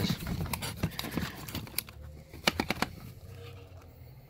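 Small plastic bottles and cardboard boxes knocking and rustling as they are sorted by hand in a cardboard box: a run of light clacks and knocks that thin out after about three seconds.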